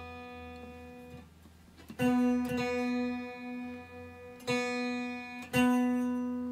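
Stratocaster-style electric guitar being tuned by ear: the fourth-fret B on the G string and the open B string are plucked in turn, about two seconds in and again near the end, and left to ring while the B string is brought slightly down from sharp. The two B notes waver slowly against each other where they are not yet matched.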